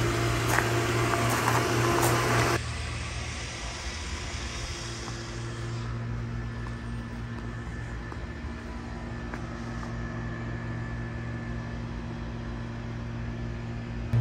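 Pool pump motor running with a steady hum and rushing noise, loud for the first couple of seconds, then dropping suddenly to a quieter steady hum.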